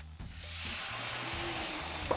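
Red wine poured into a hot frying pan of sautéed vegetables and soya, sizzling; the sizzle swells within the first half second and then holds steady.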